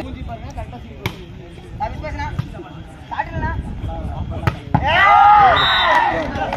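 Volleyball being struck twice, sharp single hits about a second in and again about four and a half seconds in, over spectator chatter. Then the crowd breaks into loud overlapping shouting near the end.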